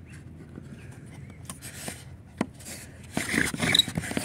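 Wooden friction-fire drill: a wooden spindle scraping in a fireboard notch, with light scrapes, a sharp click about two and a half seconds in, and louder scraping near the end.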